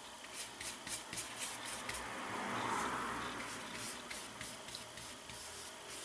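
Paintbrush loaded with watery paint stroking over paper: a run of faint, quick, scratchy brush strokes, with a longer, louder rub in the middle.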